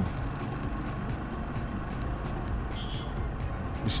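Steady engine and road noise of a vehicle driving along a paved street, under background music.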